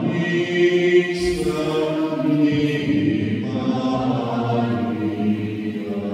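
A group of voices singing a slow, sustained chant-like hymn together, with long held notes.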